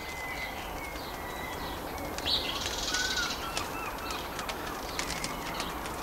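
Birds chirping in the background over a steady low outdoor hum, with a short warbling run of chirps about two and a half seconds in, and a few faint small ticks.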